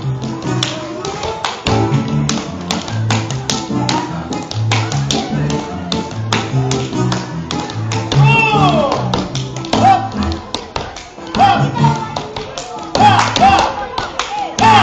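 Dance music with a steady bass beat, cut through by rapid, irregular taps and stamps of a dancer's shoes on a wooden floor. Voices rise over the music near the end.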